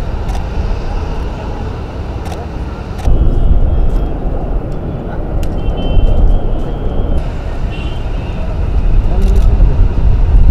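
Outdoor field-recording ambience: a heavy, steady low rumble that gets louder about three seconds in, with indistinct voices in the background.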